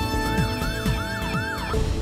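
News-programme bumper music with held tones and a pulsing beat, overlaid by a siren-like wail that rises and drops about four times in quick succession.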